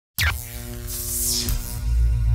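Electronic intro sting: it starts suddenly with a falling swoosh, has a noisy whoosh about a second in, and runs over held tones and a pulsing low bass.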